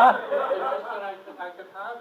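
Speech: a man talking, loudest right at the start, then quieter talk.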